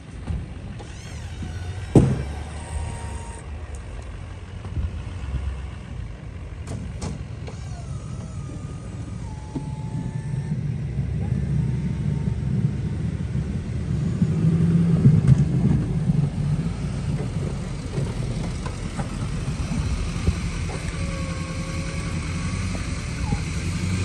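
Pickup truck with a snow plow running while pushing snow; the engine sound grows louder after about ten seconds. There is a sharp knock about two seconds in.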